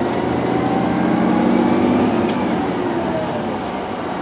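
Ride noise inside a moving TTC CLRV streetcar: a steady rumble of wheels on rail with a faint motor whine that drifts slightly in pitch, and one sharp click a little past halfway.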